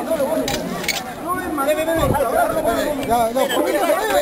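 Outdoor crowd chatter: many voices talking over one another, with a couple of brief sharp clicks about half a second and a second in.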